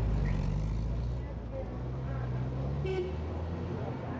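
A vehicle engine running steadily in street traffic, its pitch dropping slightly about a second in, with a short knock about three seconds in.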